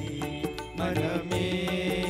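Live band music on electronic keyboards with a steady percussion beat, an instrumental passage of a Tamil film song. A sustained high synth tone comes in about halfway through.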